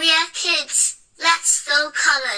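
A child's high voice singing a short intro jingle in two phrases, with a brief break about a second in.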